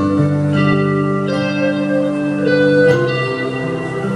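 Live band playing a slow instrumental passage: electric guitar and keyboard holding sustained chords that change about once a second.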